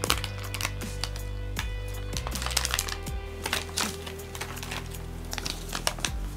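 Crinkling of a thin clear plastic bag and rustling of a folded paper instruction sheet being taken out and unfolded by hand, a run of quick irregular clicks and rustles. Steady background music plays under it.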